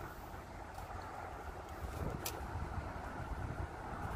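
Outdoor ambience dominated by wind buffeting the microphone, an uneven low rumble, with a single faint click about two seconds in.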